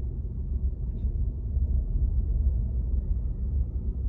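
Steady low rumble of a slowly moving car, heard from inside the cabin, with a faint click about a second in.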